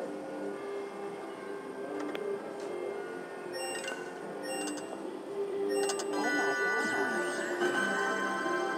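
Fortune of Asia video slot machine playing its electronic game music during free spins, with a few short clicks in the middle. From about six seconds in comes a flurry of chiming, gliding tones as the reels land a five-of-a-kind win.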